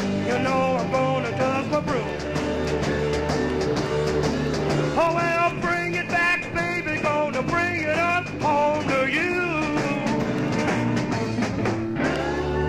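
Live 1960s electric blues-rock band playing, with a wavering sung or slide-guitar line over the band.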